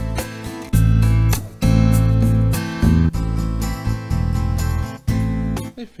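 Arranger keyboard's factory accompaniment style playing, with strummed acoustic guitar, bass and drums in a steady rhythm. It cuts off near the end.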